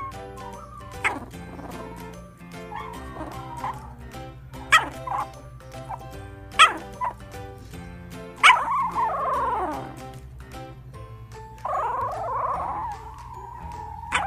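Sleeping puppy yipping and whimpering in its sleep: a string of short sharp yips. One yip, a little past halfway, trails off into a long falling whine, and a wavering whimper follows later. Background music plays throughout.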